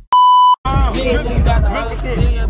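A loud electronic beep at one steady pitch, lasting about half a second and cutting off sharply, followed by voices over hip-hop music with heavy bass.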